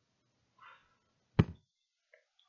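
A single sharp knock about a second and a half in, something hard striking a hard surface, preceded by a faint brief rustle.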